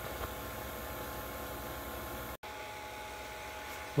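Harvest Right freeze dryer's vacuum pump running with a steady hum and hiss while pulling vacuum on the chamber. The sound drops out for a split second just over halfway through, then the hum carries on.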